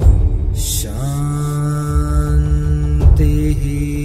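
A single voice chants a long, drawn-out 'Om' held on one note. It enters about a second in, and just after three seconds it shifts to a slightly different note with a duller, humming tone. Under it runs a low, pulsing musical drone.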